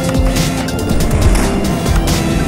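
Background music: sustained tones over a regular low beat.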